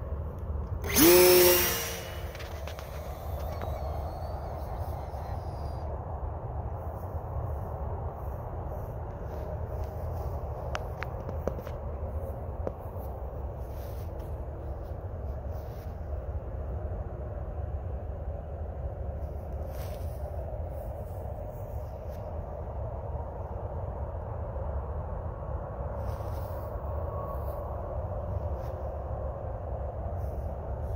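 Small 1/2A glow engine on a free-flight model plane running at high revs close by; about a second in it is loud and drops sharply in pitch as the plane is launched away. It goes on as a faint, steady, high drone while the plane climbs, over wind rumbling on the microphone.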